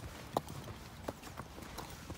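A horse's hooves stepping: a few faint, sharp knocks spaced under a second apart.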